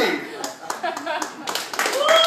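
Audience clapping, many separate sharp hand claps, with voices over them.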